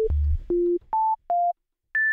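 Pure sine-wave tone from the Serum software synthesizer's oscillator, played as a series of short separate notes that jump between pitches: a low note, then several higher ones, a brief gap, and a high note near the end. Each note is a single clean tone with no overtones.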